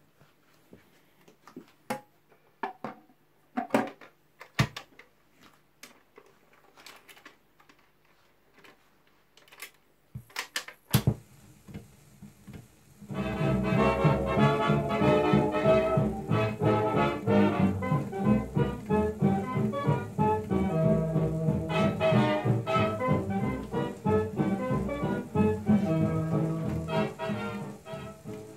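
Scattered handling clicks and knocks, then a sharp click about 11 s in as the needle meets the record, and high surface hiss from then on. From about 13 s a 1930s dance band with brass plays from the worn 78 rpm shellac disc through the radiogram's speaker.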